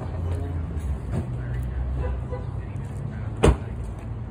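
Steady low rumble of motor vehicle traffic on the street, with one sharp knock about three and a half seconds in.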